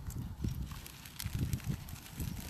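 Footsteps and a pushchair rolling along a dirt path: irregular low thuds with faint clicks.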